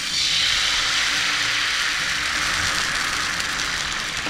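Dosa batter sizzling in a steady hiss as it is ladled onto a hot, oiled dosa pan.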